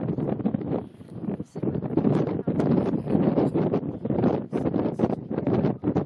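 Gusty wind buffeting the camera microphone, a loud, irregular rumble throughout.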